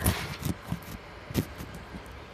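Handling noise from the recording phone being grabbed and moved: a sharp knock at the start, a few smaller knocks and rubbing, and another knock about a second and a half in.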